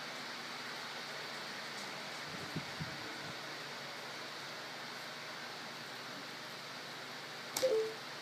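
Steady hiss of room noise, with a couple of soft low knocks about two and a half seconds in and a sharp click followed by a brief short sound near the end.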